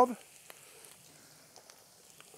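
Faint sizzling of chanterelles frying in butter in a pan, with a few small ticks.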